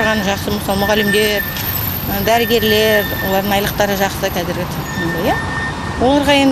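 A woman talking, with a faint steady high tone in the background.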